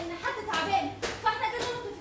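Performers' voices talking on stage, broken by three sharp strikes about half a second apart.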